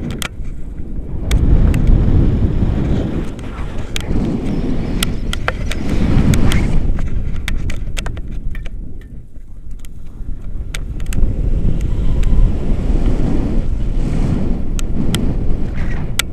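Wind rushing over a camera microphone in flight on a tandem paraglider: a loud low rumble that surges and eases in gusts every few seconds, with scattered sharp clicks over it.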